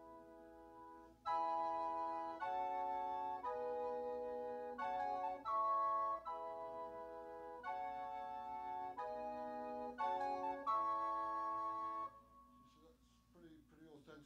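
Electronic keyboard playing an organ-like patch: a run of sustained chords, each held about a second, that stops about 12 seconds in.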